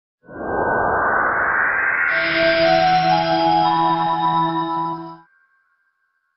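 Logo intro sting: a rising whoosh sweeps up for about two seconds, then a sustained chord of several held tones rings out and stops abruptly about five seconds in.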